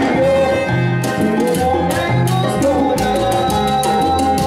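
Live salsa band playing, with a moving bass line, sustained pitched instrument notes and steady percussion.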